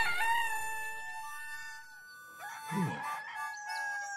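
A cartoon rooster crowing at the start, over soft held music chords. A brief low falling sound comes about three seconds in.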